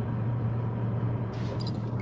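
A steady low hum over even background noise, with a faint brief rustle or click about one and a half seconds in.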